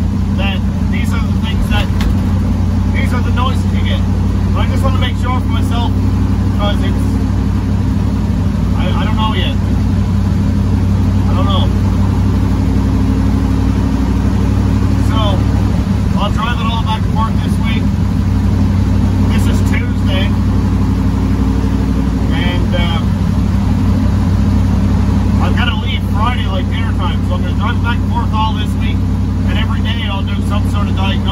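Inside the cab of a moving 1957 Chevy pickup, its twin-turbo destroked 6-litre V8 drones steadily, with a man talking intermittently over it.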